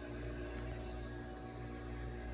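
Steady low hum of room tone, with no distinct event.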